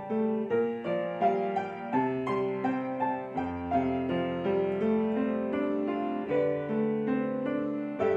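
Upright piano playing a melody, a few notes a second, over held low notes and chords.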